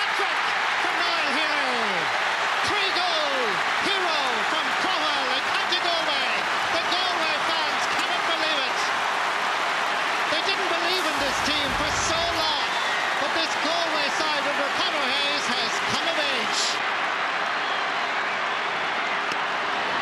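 A large stadium crowd cheering and applauding a hurling goal, many voices yelling over a steady roar. There is a short low rumble just past the middle.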